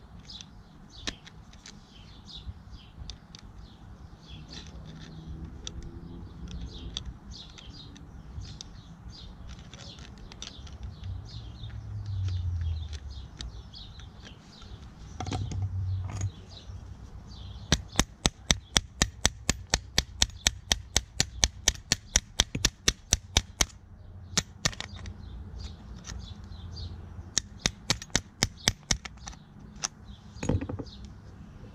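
Sharp metal clicks in quick regular runs, about five a second, from a torch-heated, seized manual can opener being worked loose by hand and pliers: one run of about six seconds just past halfway, and a shorter one near the end. Earlier a low rumble swells twice.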